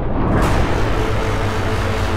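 Trailer sound design: about half a second in, a loud dense whoosh of noise swells in over a steady low drone and keeps going.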